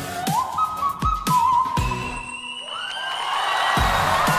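Live vocal performance: a singer glides up and holds high sustained notes, climbing into a thin whistle-register tone, over backing music with a few drum hits. A wash of audience cheering swells in the second half.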